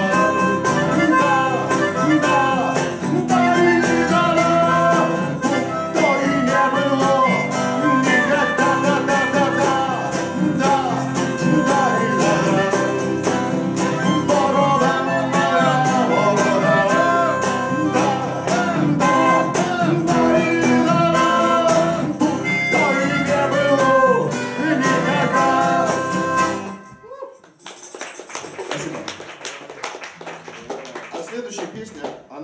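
Steel-string acoustic guitar strummed in a steady rhythm, with a man singing a melody over it. The playing stops about 27 seconds in.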